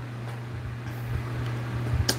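A steady low hum with some faint low rumbling underneath.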